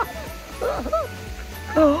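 A toddler's short, high-pitched vocal calls, two of them, each rising and falling in pitch.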